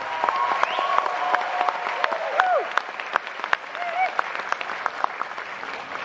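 Audience applauding and cheering after a men's choir finishes its song, with a few voices calling out over the clapping.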